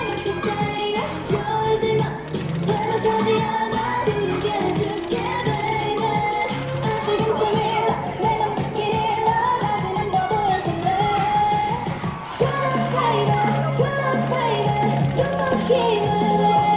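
Upbeat K-pop dance track with female singing and a steady beat, with a line that rises in pitch a few seconds in; the bass grows stronger about twelve seconds in.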